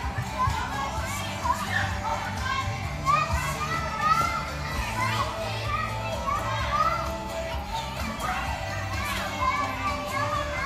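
Many children's voices calling and chattering in a large indoor hall, over background music.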